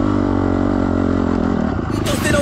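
Enduro dirt bike engine running at high revs under load on a hill climb, its pitch holding fairly steady with slight wavering.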